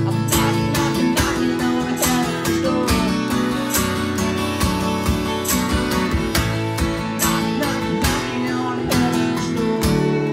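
Harmonica played from a neck rack over steadily strummed acoustic guitar, with a few bent notes: an instrumental harmonica break in the song.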